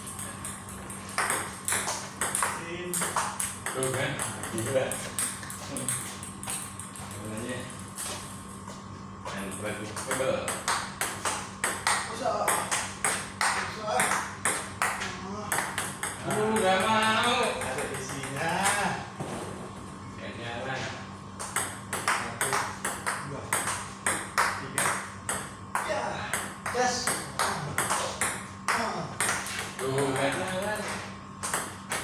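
Table tennis rally: the ball clicking off paddles and the table in a quick, irregular run of hits. Men's voices talk briefly over it about halfway through.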